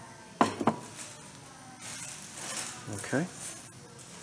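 Two quick clinks about half a second in as a Corning Ware glass-ceramic tea kettle and its lid are handled, followed by faint rustling.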